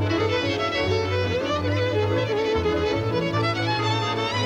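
Hungarian Gypsy band music: a lead violin carries the melody over double bass and the band's accompaniment, playing steadily without pause.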